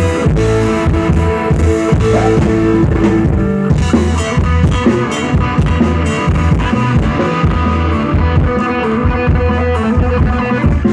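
Live rock band playing loudly on a stage PA: electric guitars and bass over a steady drum-kit beat.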